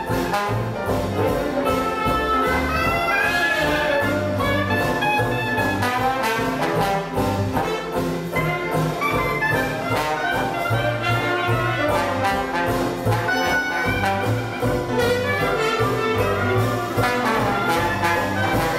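Traditional New Orleans jazz band playing live: cornet, muted with a hand-held metal mute, clarinet and trombone weave melodies together over banjo, string bass and drums keeping a steady beat.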